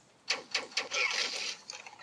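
Laser tag gun firing its electronic shot sound effect: a quick rapid-fire burst of clicks and noise lasting about a second and a half.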